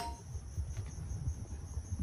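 Insects trilling: a faint, high, evenly pulsing note over a low rumble.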